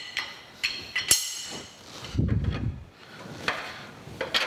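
Metal clinks and clanks of a wrench working the overarm lock nuts on a Kearney & Trecker Model H horizontal milling machine, several sharp ringing strikes with the loudest about a second in. A low dull thud comes just past the middle.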